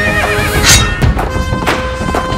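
Loud dramatic song music with a horse whinny sound effect laid over it in the first half second, its pitch quavering, followed by a short sharp hiss.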